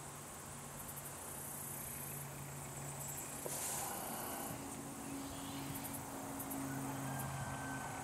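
Faint outdoor ambience: insects chirring in short high-pitched stretches over a steady low hum, with a brief hiss a little before the middle.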